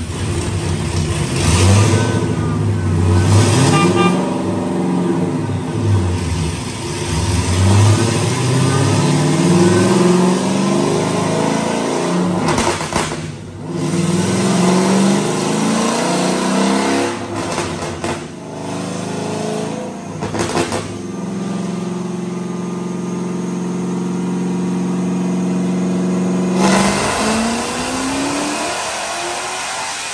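Supercharged Hemi V8 of a Dodge Challenger Hellcat run on a chassis dyno: revved up and down several times, then a long full-throttle pull that climbs in pitch and holds high before the throttle closes near the end. At the top of the pull the engine breaks up, at about 6,500 rpm.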